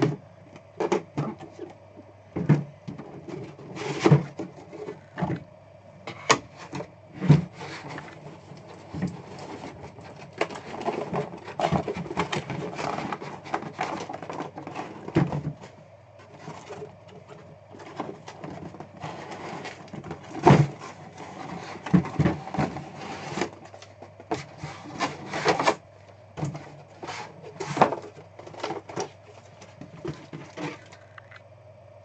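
Cardboard box packaging being cut open and handled: a blade run along the box seal, then flaps and lids moved, with many sharp knocks and clicks and stretches of rustling. A steady low hum runs under it.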